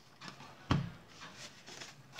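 Soft handling of a deck of playing cards on a cloth close-up mat: cards sliding and rubbing as the deck is gathered and squared, with one brief low sound about two-thirds of a second in.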